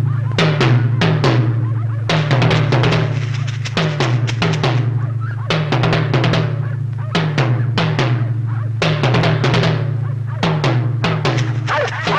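Tense film background score: quick drum rolls and fills recur about once a second over a steady low drone.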